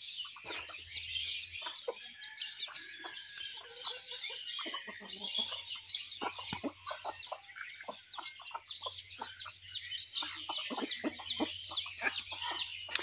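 Chickens clucking, with a constant stream of short high peeps from chicks.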